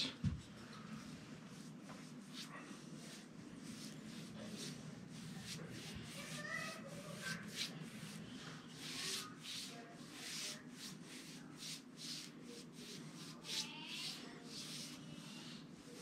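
Paintbrush strokes applying semi-gloss paint to a wooden door jamb: faint, repeated short swishes of the bristles on the trim, coming in quick runs.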